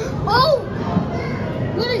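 High-pitched children's voices calling out briefly, about half a second in and again near the end, over steady background chatter of a crowd in a large indoor hall.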